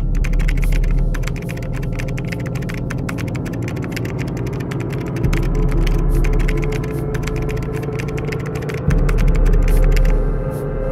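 Typing sound effect: rapid keystroke clicks, several a second, over a low steady drone that grows louder about halfway through and again near the end.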